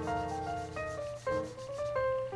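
Black marker scribbling back and forth on paper as a box is shaded in, with soft background music playing melodic notes.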